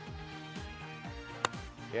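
Background music with a steady beat, and about one and a half seconds in a single sharp click of a golf iron striking the ball.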